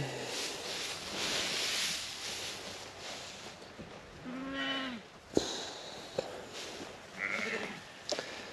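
A sheep bleats once, a short call about halfway through, followed by a sharp click; a fainter, higher call comes near the end.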